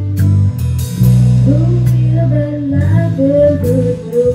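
Small live rock band playing: bass guitar, electric guitar, keyboard and drum kit with cymbal hits. A woman's singing voice comes in over it about a second and a half in.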